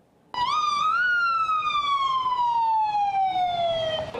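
A siren wailing: after a brief near-silence it comes in loud, rises in pitch for about half a second, then falls slowly and steadily.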